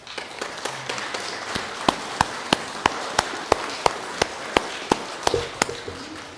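A congregation applauding, swelling at once and dying away near the end. From about two seconds in, one pair of hands close by claps loudly and evenly, about three claps a second.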